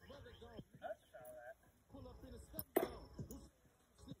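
A thrown metal washer lands with a single sharp clink about two and a half seconds in, against faint distant talk.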